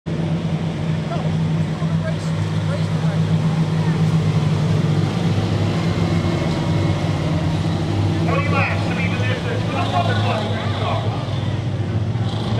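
A pack of stock cars running together around a short oval, their engines making one steady, loud drone. From about eight seconds in, a voice is heard over the engines.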